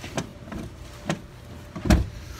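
Light clicks, then a loud thump near the end, from the rear seat release of a 2016 Honda Pilot being worked and the seat folding down in the cargo area.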